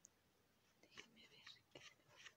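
Near silence, with a few faint, short, soft sounds from about halfway through.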